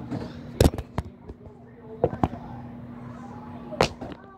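Handling noise from a phone being moved and gripped: several sharp knocks and bumps, the loudest about half a second in and another near the end, over a steady low hum.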